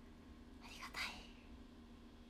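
A brief breathy whisper from a young woman's voice about a second in, over a faint steady room hum.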